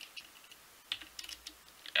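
A few separate key presses on a computer keyboard, the loudest about a second in.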